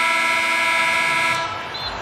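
Basketball arena horn sounding as the game clock hits zero, the end-of-game signal: one long steady blare that fades out about one and a half seconds in.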